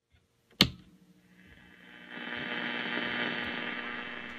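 A sharp click about half a second in, then a steady hum made of several held tones that swells in over about a second and holds.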